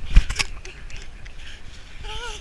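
A sharp thump about a quarter second in and a lighter knock just after, then low rumbling and rustling: a handheld camera being jostled as people run and play in the snow.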